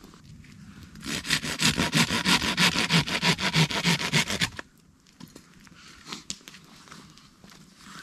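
Quick, rhythmic scraping of a blade working a piece of fatwood for about three and a half seconds, stopping suddenly, followed by a few faint handling clicks.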